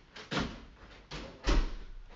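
A door being opened and shut as someone comes back into the room: a knock about a third of a second in, another about a second in, then the loudest thud at about a second and a half.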